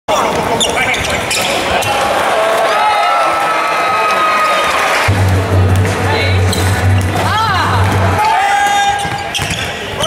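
Basketball game sounds in an arena: a ball bouncing on the hardwood court and sneakers squeaking in short sharp chirps, over music and voices.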